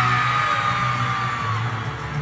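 Live pop band playing in an arena, heard from the audience, with one long high-pitched scream from a fan close to the recording phone that fades out near the end.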